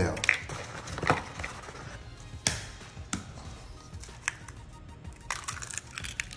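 Eggs being cracked against the rim of a glass measuring jug and broken into it: short, sharp cracks at irregular intervals.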